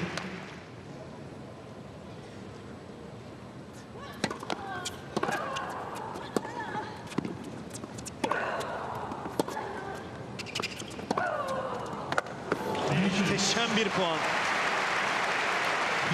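Tennis rally on an indoor court: sharp racket-on-ball strikes and bounces, scattered from a few seconds in, with a player's vocal grunts on some shots. About three seconds before the end, crowd applause rises and holds.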